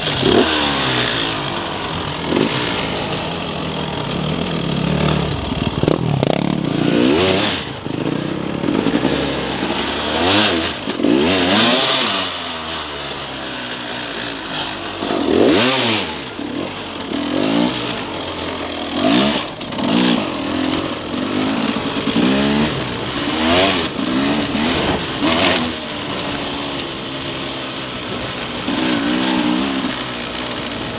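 KTM enduro dirt bike engine revving up and down in repeated throttle blips as the bike creeps over rocky ground at walking pace, then pulling away harder near the end.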